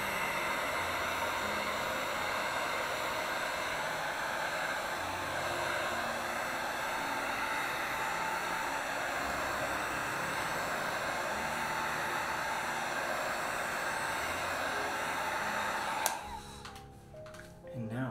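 Electric heat gun blowing steadily, a constant rush of fan and air, switched off with a click about 16 seconds in.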